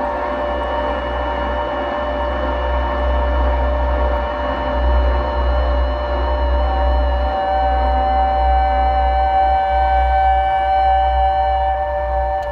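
Slow, sustained chamber music for double-tracked violin, soprano saxophone and EBow guitar: several long held notes overlap with little movement, over a low rumble. A strong new note enters about halfway through and holds almost to the end.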